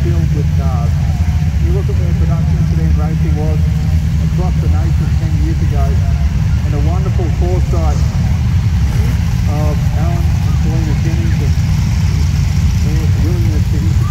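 Production sedan race car engines running at low revs, a steady deep rumble, with a voice talking over it.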